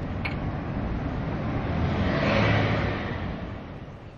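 A motor vehicle passing by, its engine and tyre noise swelling to a peak about two and a half seconds in and then fading away.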